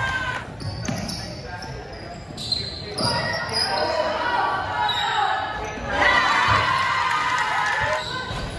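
Basketball bouncing on a hardwood gym floor, with voices calling out, echoing in a large gym.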